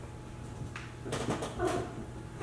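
A person's voice making short, high whimpering yelps, starting a little under a second in.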